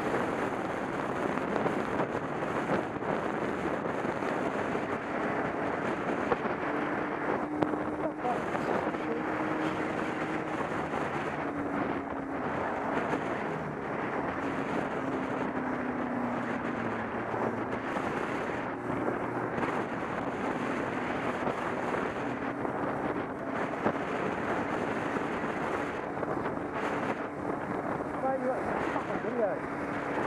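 Wind rushing over a motorcycle rider's helmet-mounted microphone, with the bike's engine underneath, at about 80 km/h and played at quarter speed. The noise is a deep, smeared rush, and faint drawn-out engine tones slowly sink in pitch.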